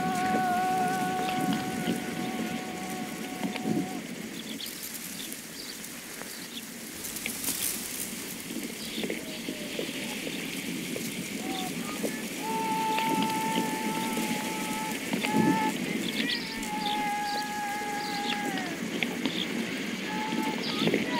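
A voice singing long, drawn-out held notes that slide down at their ends: one phrase at the start, then two more in the second half. A steady crackling, rustling noise with scattered small clicks runs underneath.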